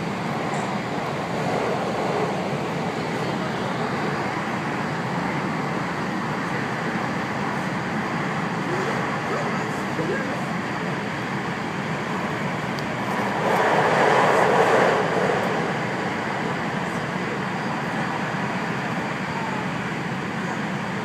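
Steady running noise inside the cabin of a JR West 521 series electric train, heard from the seats. About two-thirds of the way through, a louder rushing swell lasts about a second and a half.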